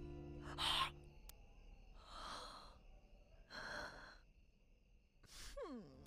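A woman huffing and sighing: a sharp breathy exhalation, then two long drawn-out sighs, over soft background music that drops away about a second in. Near the end a short tone glides downward.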